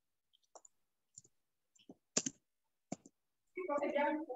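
A few sharp, isolated computer-mouse clicks spread over the first three seconds, the loudest a little over two seconds in. Near the end a voice is briefly heard.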